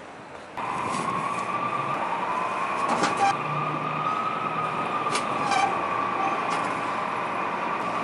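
A distant emergency siren holds one long, slowly wavering tone over city traffic. A few short metal clunks come from a clothes-donation bin's drop chute being worked.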